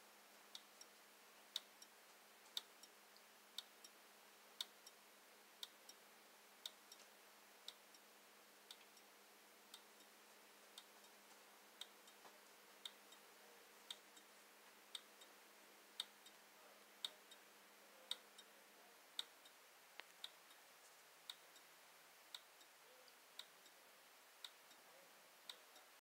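12-volt automotive flasher unit clicking on and off about once a second as it pulses the supply to a slayer exciter coil, some clicks coming in close pairs.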